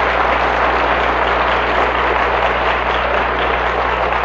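An audience applauding, a dense, steady clapping that holds at full strength throughout.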